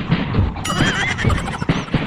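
Dance music with a steady beat. About two-thirds of a second in, a horse whinny sound effect comes in over it, a wavering high neigh that rises and falls several times.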